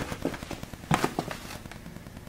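Handling noise: a few scattered sharp clicks and knocks as a handheld camera is moved, one cluster at the start and another about a second in.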